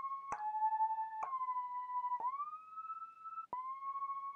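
Logic ES2 software synthesizer lead of detuned square and pulse-wave oscillators playing about five single notes, each sliding up or down in pitch into the next with portamento glide turned up high. Each new note starts with a small click from an abrupt attack.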